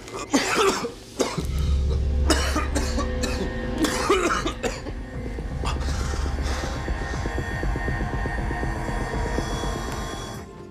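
A man coughing hard several times in the first few seconds, coughing up blood from a ruptured blood vessel in his lung. About a second in, a low droning music score comes in and holds under the coughs.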